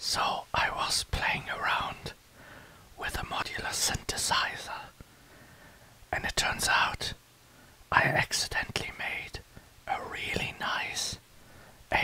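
Whispered speech in short phrases with brief pauses between them, in ASMR style, with a few small clicks.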